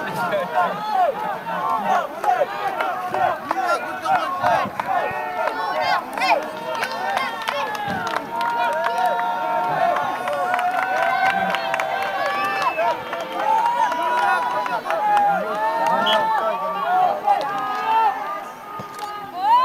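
Many overlapping voices of a small outdoor crowd of football spectators talking and calling out, with a short laugh about two seconds in.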